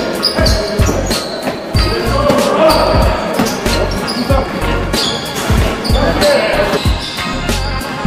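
A basketball bouncing in repeated thumps on a hardwood gym floor, with music and voices underneath.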